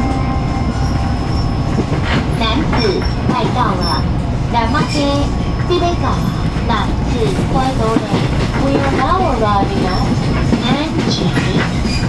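TRA EMU500 electric multiple unit running at speed, heard from inside the carriage as a steady low rumble of wheels and running gear. A recorded onboard announcement voice plays over it from about two seconds in.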